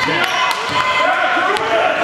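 Basketball being dribbled on a hardwood gym floor, a few sharp bounces, over spectators' voices talking throughout in a large gymnasium.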